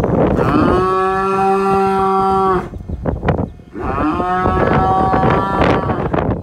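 A cow mooing twice: two long, steady moos, the first starting about a second in and lasting nearly two seconds, the second starting about four seconds in.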